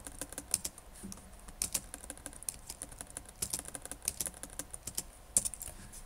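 Computer keyboard being typed on: quick keystroke clicks in short, uneven runs.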